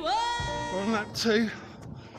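Background music with a sung voice ending: a held note that slides up at the start, then wavers and fades out about halfway through.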